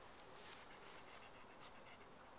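A Brittany mix dog panting faintly with a few soft breaths.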